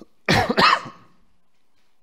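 A man coughs twice in quick succession, loudly, within the first second.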